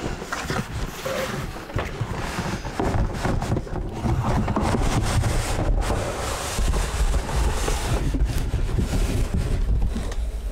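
A cardboard computer-case box scraping and rustling as it is slid up and off the styrofoam end caps packed around the case. The rubbing noise runs without a break and turns heavier and lower from about three seconds in.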